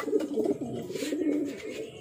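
Racing pigeons cooing in the loft: a steady run of low, wavering coos.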